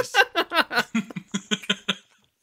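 People laughing, a quick run of short 'ha-ha' pulses that thins out toward the end.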